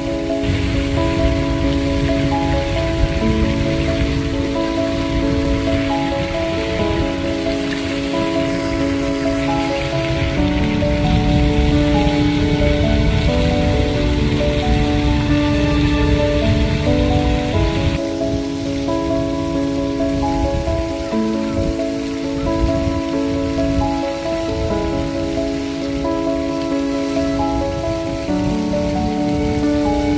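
Background music with slow, sustained notes over the steady hiss of a fountain's spray falling back onto the water. The hiss drops away about eighteen seconds in.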